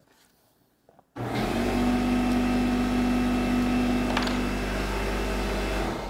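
Shop air compressor and dust collectors, wired to one remote switch, come on suddenly and loudly about a second in, run steadily for about five seconds, then are switched off near the end. The compressor had been left switched on, so it started with the dust collectors.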